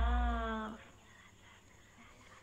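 End of a musical phrase from a K-pop song: a held, slightly falling sung note over low bass that cuts off under a second in, leaving near silence.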